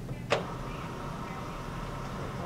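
A single sharp click about a third of a second in, from equipment being handled at a wall-mounted suction unit, over a steady low room hum.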